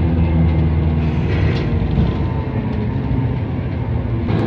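Bus engine and cabin drone heard from inside the bus: a steady low hum with a rumble under it, whose tones fade about a second in.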